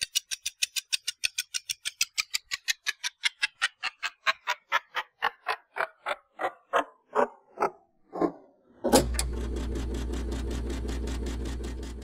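Logo intro sound effect: a run of ticks that start about six a second and slow down while falling in pitch, then a loud hit about nine seconds in that opens into a sustained low drone with a steady chord, fading away at the end.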